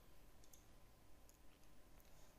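Near silence broken by a few faint computer mouse clicks, as a link is clicked to open another web page.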